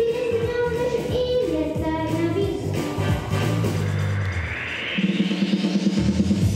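A young girl singing into a microphone over a recorded pop backing track, holding long notes. In the second half a rising swell builds in the accompaniment and leads into a louder section with a pulsing beat about five seconds in.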